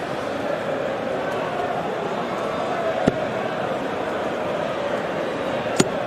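Steel-tip darts striking a bristle dartboard: two sharp knocks, about three seconds in and again near the end. They sit over a steady background hum.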